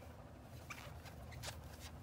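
Faint handling sounds of yarn and a crochet hook being worked: a few soft ticks and rustles over a low steady hum.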